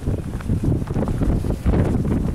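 Strong gusty wind buffeting the microphone, a low rumble that rises and falls unevenly.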